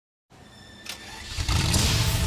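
A car engine starting: a faint click, then the engine catches about one and a half seconds in and runs loudly with a low rumble.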